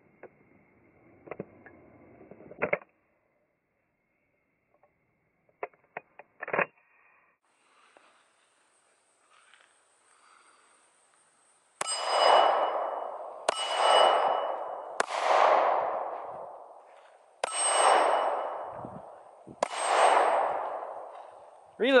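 A semi-automatic pistol gives a few sharp clicks as a magazine is seated. Then come five shots about one and a half to two seconds apart, each hit ringing a hanging steel plate target with a long, fading metallic clang.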